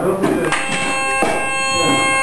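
A sustained chord of several steady pitched tones, like a reed instrument or a toy horn, starts about half a second in, and a lower note joins just over a second in; it holds without wavering.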